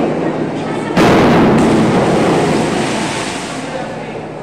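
A springboard diver hits the water with a sudden splash about a second in, followed by cheering and clapping that fades over the next couple of seconds, echoing in the indoor pool hall.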